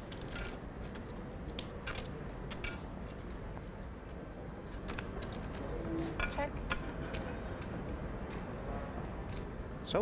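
Poker chips clicking and clattering irregularly at the table, over a low murmur of voices in the room.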